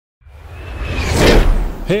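A whoosh sound effect that swells for about a second and then fades, with a deep rumble underneath.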